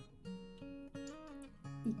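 Background music: an acoustic guitar playing held notes that change every half second or so.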